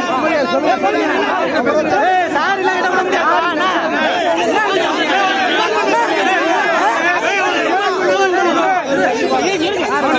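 A crowd of men talking and shouting over one another in a heated argument, many voices at once at a steady loud level.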